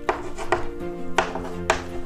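Four sharp taps of chalk on a blackboard as it writes, over soft background music with held notes.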